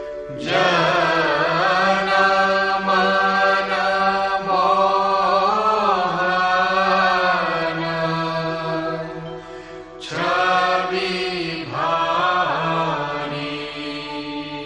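A solo voice chanting Sanskrit verse in long, slow melodic phrases over a steady drone; the chant pauses briefly about ten seconds in, then resumes.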